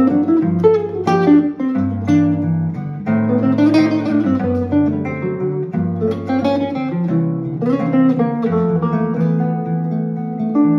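Two guitars playing a jazz tune together: a sunburst archtop guitar and a nylon-string classical guitar, plucked melody and chords over low bass notes that change about once a second.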